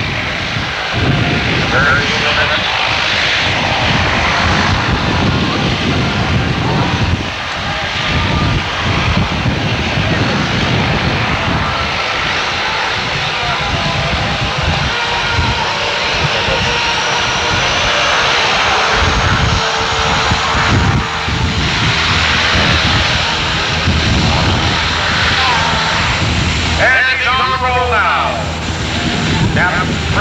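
Loud, steady aircraft engine noise on an airfield: a large helicopter lifting off, then a de Havilland Canada Dash 8 twin turboprop on the runway. A faint high whine rises slowly about halfway through, and a voice is heard briefly near the end.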